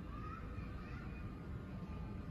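Electric standing desk's lift-column motors running steadily with a faint whine as the desktop rises toward its full height.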